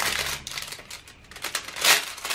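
Clear plastic cello bag crinkling as hands pull a pack of paper ephemera pieces out of it, with a louder crinkle near the end.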